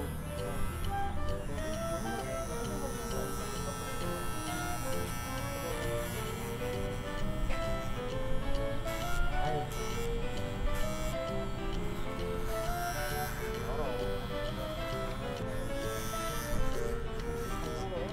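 Background music with a stepping melody, over the steady buzz of electric hair clippers cutting short hair around the ear.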